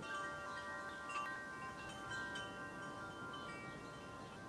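Wind chimes ringing, several metal tones struck one after another and ringing on together, beginning suddenly, with faint bird chirps behind.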